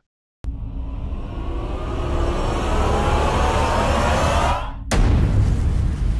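Edited-in sound effect: a rising whine over a noisy rush that builds for about four seconds, cuts off briefly, then gives way to a sudden loud deep rumble like a boom.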